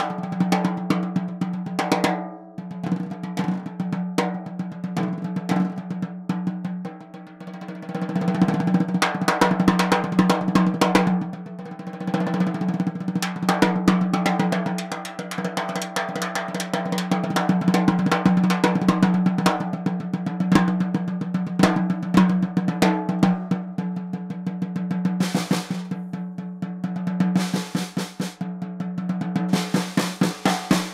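Ludwig Acro bronze-shell snare drum played with sticks with the snare wires off, so it rings open like a tom with a strong low pitch under fast strokes and rolls. A warm sound with plenty of low end.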